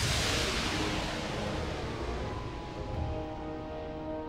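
Cartoon background score: a rushing whoosh effect at the start that fades away over a low rumble, then held notes come in about three seconds in.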